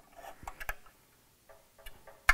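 A few faint, irregular metal clicks from bolts being run down into a polished bellhousing: a small cluster about half a second in and a couple more near the end.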